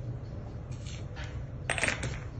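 Glass cupping cups clinking together as they are pulled off a person's back, a few short light clinks with the loudest cluster near the end.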